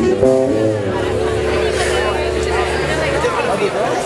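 A live band's sustained chord, a low bass note under higher held tones, that dies away about three seconds in, with people's voices over it.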